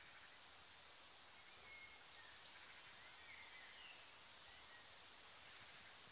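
Near silence: faint woodland ambience with a steady hiss and a few faint bird chirps scattered through.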